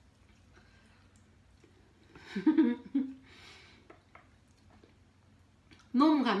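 Quiet room tone broken by a woman's brief wordless voiced sound a little over two seconds in, followed by a short breathy puff.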